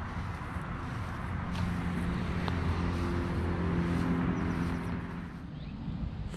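Road traffic: a motor vehicle's engine hum comes in about a second and a half in, grows a little louder, and fades away near the end, over a steady traffic background.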